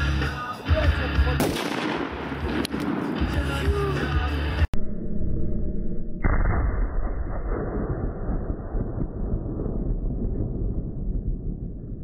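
Music with a sharp crack a second and a half in, then, after a sudden cut, an aerosol spray-paint can exploding in a fire: a deep boom about six seconds in, slowed down, followed by a long low rumble.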